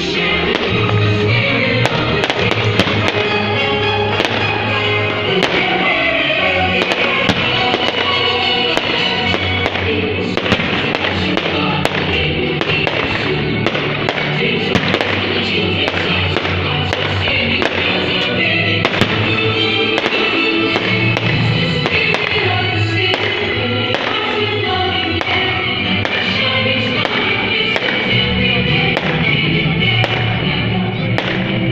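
Music playing continuously, with many sharp bangs and crackles of fireworks scattered throughout.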